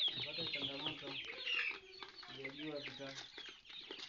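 Flock of Kuroiler chickens clucking, with many short high calls overlapping.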